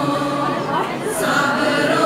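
Girls' and women's choir singing together, several voices holding notes and moving to new ones about a second in.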